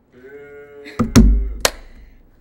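A held, voice-like tone lasting about a second, then a rimshot sting: two quick drum hits, the second with a deep thud, and a cymbal splash, marking a joke's punchline.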